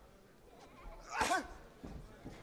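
A person's short, loud shout about a second in, with a wavering pitch, rising over faint background hubbub.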